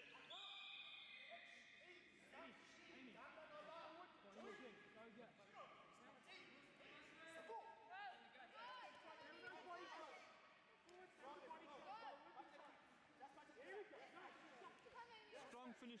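Faint, indistinct chatter of many people in a large hall, with overlapping voices throughout and a few sharp knocks near the end.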